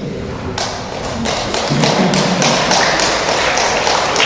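Audience applause of fairly distinct hand claps. It begins about half a second in and carries on strongly to the end.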